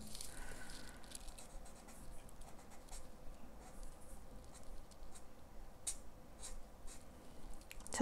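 Marker tip dabbing and stroking on sketchbook paper: faint scratchy strokes with scattered light taps.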